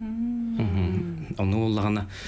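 A man's voice: a drawn-out hesitation hum on one steady pitch for about half a second, then ordinary talk.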